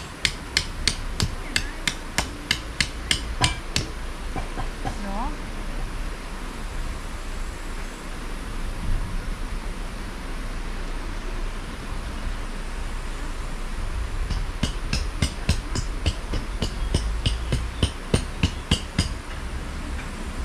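Tent pegs being driven into the ground with the back of a Fiskars X7 hatchet used as a hammer. A quick run of sharp strikes, about three a second, lasts for the first few seconds. After a pause, a second run comes near the end.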